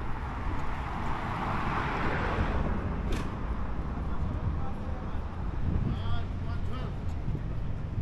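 City street ambience: a steady low rumble of traffic, with a passing vehicle swelling and fading in the first few seconds. There is a single sharp click about three seconds in and faint voices of passers-by near the end.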